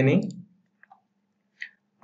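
A man's voice trails off, then two computer mouse clicks about three-quarters of a second apart, the second the louder, over a faint low steady hum.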